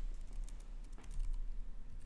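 A few soft keystrokes on a computer keyboard as a number is typed into a field.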